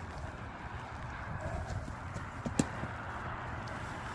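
Horse's hooves striking the arena footing as it moves off: a few scattered soft strikes, the loudest pair close together about two and a half seconds in.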